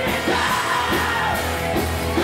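Live rock band playing loudly, with vocals over electric guitar and a steady drum beat.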